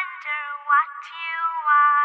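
High-pitched cartoon character's voice giving a wavering, squeal-like cry in a few short bursts.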